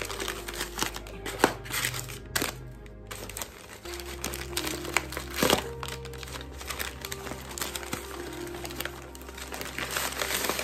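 Paper wrapping and shredded paper filling crinkling and rustling as a package is handled and turned over, with a couple of sharper crackles about a second and a half in and again about five and a half seconds in. Soft background music plays underneath.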